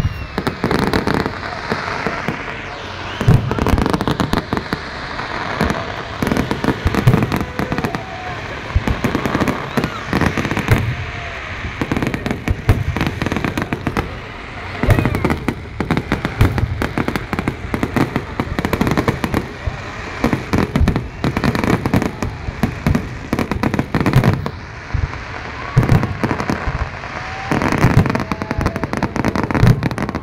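Large aerial fireworks display: shells bursting in rapid, continuous volleys of bangs and crackle, with crowd voices underneath.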